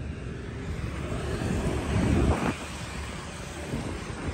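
Street traffic passing close by, one vehicle swelling up and fading about two seconds in, over a steady rumble of wind on the microphone.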